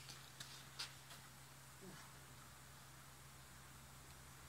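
Near silence: room tone with a low steady hum and a few faint clicks in the first second.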